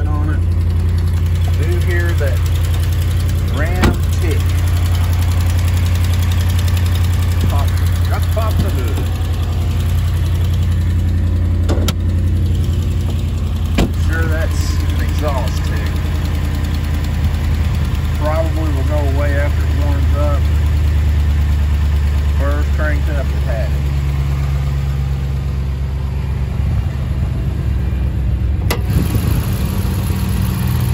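The 5.7-litre Hemi V8 of a 2014 Ram 1500 idling steadily and running smooth, its note shifting a little about 24 seconds in. A few sharp knocks come along the way.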